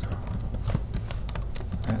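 Typing on a computer keyboard: a run of irregular key clicks as a short phrase is typed, over a low steady hum.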